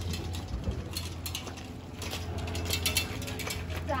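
Clusters of rapid light clicks over a steady low hum.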